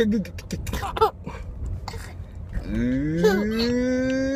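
A baby's voice: a few short babbling sounds, then from about two and a half seconds in a long drawn-out vocal sound that rises slowly in pitch and then holds steady.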